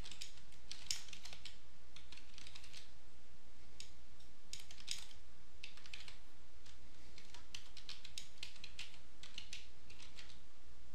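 Computer keyboard typing: irregular runs of quick keystrokes broken by short pauses, over a steady low hum.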